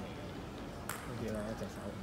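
A table tennis ball clicking once sharply off a bat or table about a second in, with a few fainter ball clicks.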